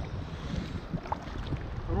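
Paddles dipping and pulling through river water beside an inflatable raft, with water splashing and wind rumbling on the microphone.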